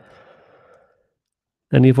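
A man's soft breath, a sigh-like exhale, lasting under a second, then silence; he starts talking again near the end.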